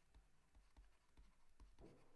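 Very faint taps and strokes of a stylus writing on a pen tablet, a few soft ticks about half a second apart, over near silence.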